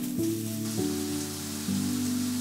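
A steady hiss of fine water spray over background music with sustained chords that change a few times.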